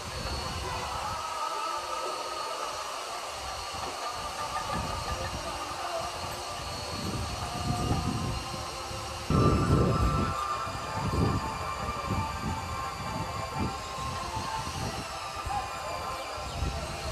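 Several sustained, horn-like tones held steadily over a background of crowd noise, with a louder stretch of irregular low beats starting about nine seconds in.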